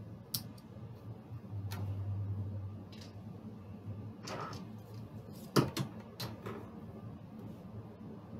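Scattered light clicks and knocks of dice and chips being handled on a felt craps table, about seven in all, the sharpest a little past halfway. A low hum runs for about a second near the start.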